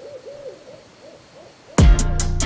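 A rapid, even series of short hooting calls, about three to four a second. Near the end, loud music with a drum beat cuts in suddenly.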